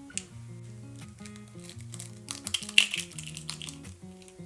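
Background music with a steady melody, over which an eggshell is cracked and broken open by hand: a cluster of short crackles in the second half, with the loudest snap a little under three seconds in.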